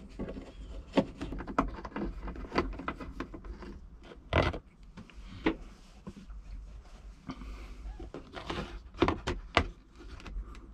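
A small Phillips screwdriver turns the screws out of a car's plastic interior dome light, making a run of small clicks and scrapes. There is a louder knock about four and a half seconds in, and a quick cluster of clicks near the end as the loosened light is handled.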